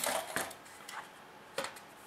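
A few light knocks and taps from handling parts on a workbench: a model trailer's sheet-aluminium deck and a small plastic scale model being lifted and set down. A sharp tap comes right at the start, then lighter knocks about half a second and a second and a half in.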